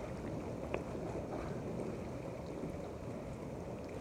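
Jacuzzi jets churning the water: a steady rushing and bubbling close to the phone's microphone, with a faint click about three-quarters of a second in.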